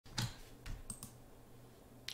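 Four quick, faint computer clicks within the first second, the first the loudest, as the virtual machine window is switched to fullscreen.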